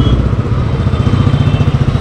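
Motorcycle engine running steadily at low speed, its sound beating in an even, rapid pulse.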